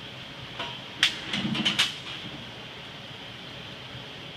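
Steady hiss of compressed air bleeding through the resistance welder's weld-nut electrode, the blow-through that keeps slag off the spring-loaded guide pin. About a second in there is a sharp clack, followed by a brief burst of clattering mechanical clicks lasting under a second.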